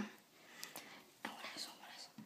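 Faint whispered speech, breathy and without clear voice, with a couple of light clicks in the first second.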